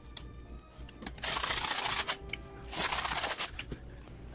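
Pepper grinder being twisted over the steaks in two short rasping bursts, about a second in and again near three seconds in.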